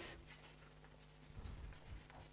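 Faint chalk writing on a blackboard, a little louder near the end.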